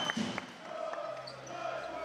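Echoing sports-hall ambience in a lull between the basketball team's loud chants: a few sharp knocks in the first half second, then faint distant voices.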